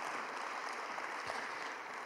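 Faint, steady applause from a congregation, an even patter of many hands.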